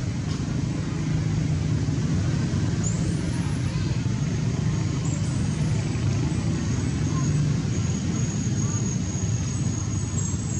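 Steady low rumble of outdoor background noise, with a faint thin high tone joining about six seconds in.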